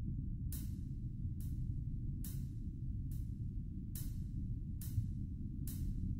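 Ambient music: a deep, steady low rumble with a short, soft high tick repeating evenly a little faster than once a second.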